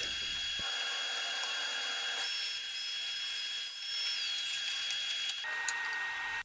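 Table saw running with a steady, thin high whine; the tone shifts a little about five and a half seconds in.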